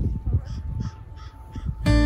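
A bird calling in a quick series of short calls, about three a second, over low thumps; strummed acoustic guitar music comes in near the end.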